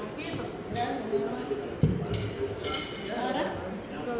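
Low table chatter with the clatter of a meal being served: a dull thump about two seconds in, as of a plate set down on the table, followed by a light clink of dishes and cutlery.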